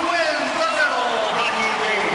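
Indistinct voices over steady arena crowd noise.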